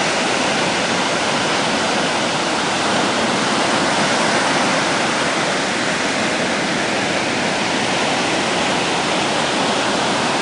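Ocean surf breaking and washing up the beach: a steady, even rush of noise with no letup.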